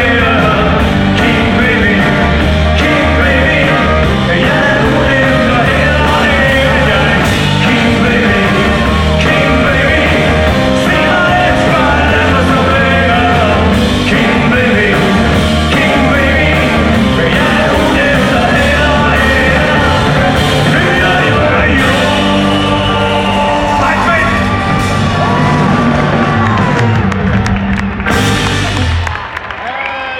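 A rock band playing live, with a male lead singer over electric guitars, keyboard and drums. The sound thins and drops in level in the last two seconds as the song winds down.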